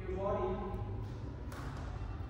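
A person's voice, one short drawn-out vocal sound in the first second, over a steady low room hum.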